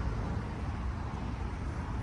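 Steady low rumble of outdoor traffic noise under an even hiss, with no single event standing out.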